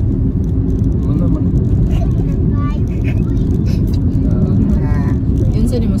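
Steady road and engine rumble inside a moving car's cabin, with faint children's voices now and then.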